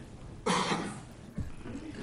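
A person coughing once into a microphone about half a second in. A faint low knock follows about a second later.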